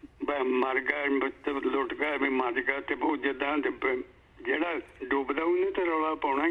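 Speech only: one voice talking over a narrow, telephone-like line.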